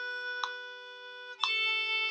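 Violin bowing a descending C major scale in half notes: one held note steps down to the next about a second and a half in. Under it a steady G drone tone, with metronome clicks once a second at 60 beats per minute.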